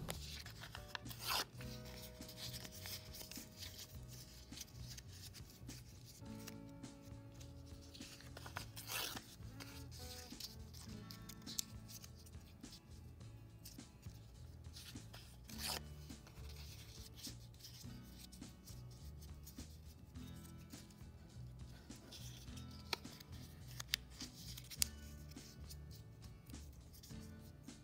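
White paper being torn and scrunched into small balls by hand: scattered crinkling and rustling with a few sharper rips, over soft background music.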